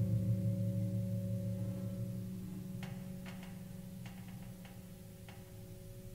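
Low piano notes held and slowly dying away. From about halfway there is a short run of about seven soft, dry clicks.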